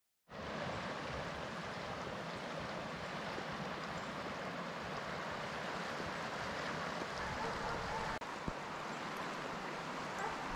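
Steady rushing of a partly frozen river's open water.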